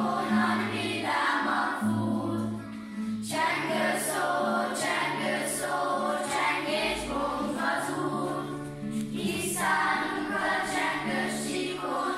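A group of children singing a song together over instrumental accompaniment with a steady bass line.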